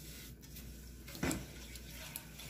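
Faint wet swishing and scraping of a silicone spatula stirring sugar into water in an aluminium saucepan, with one short, louder tap a little over a second in.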